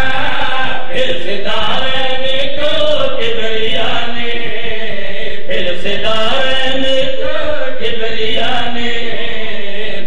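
A man's voice chanting a sung religious recitation into a microphone, amplified, in long held phrases whose pitch bends up and down.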